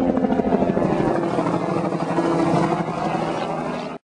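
Helicopter flying low, its rotor beating in quick, steady pulses and growing a little fainter near the end.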